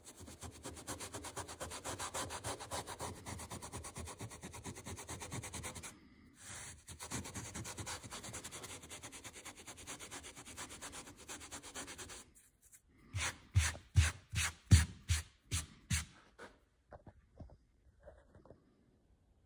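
Fingers rubbing fine sawdust into the chipped seam around a wood inlay so the gap blends in: a rapid, steady scratchy rubbing on the board, with a short break about six seconds in. Past the twelve-second mark it gives way to a run of louder separate strokes, about two or three a second, as the hand brushes the dust across the surface.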